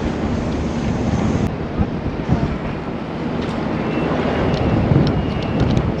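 Wind buffeting the microphone high up a sailboat's mast, a steady gusty rumble, with a few faint ticks in the second half.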